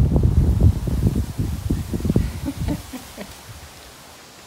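Wind buffeting the phone's microphone: an irregular, gusty low rumble that is strong at first and dies away about three seconds in.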